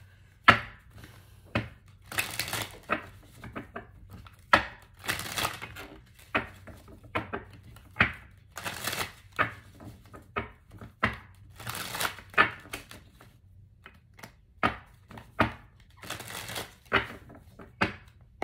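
A deck of oracle cards being shuffled by hand: short rustles and snaps of card against card, coming in uneven bursts.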